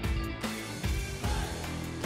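Upbeat background music with a steady beat.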